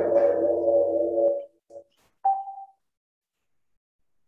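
Audio feedback ringing between a video-call speaker and microphone: several steady tones that hold, then die away about a second and a half in. A short higher tone follows about two seconds in.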